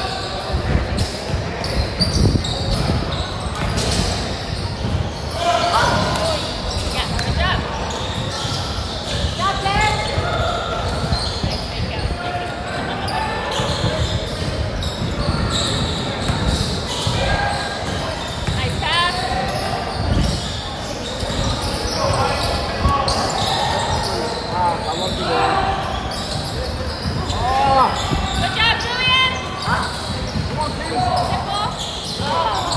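Basketball game in a large gym: a ball bouncing on the hardwood court, sneakers squeaking now and then, and players and onlookers calling out, all echoing in the hall.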